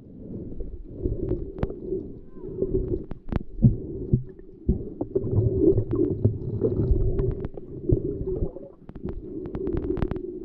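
Muffled underwater rumble and gurgle of water moving around a camera held below the surface, with scattered sharp clicks, several in quick succession near the end.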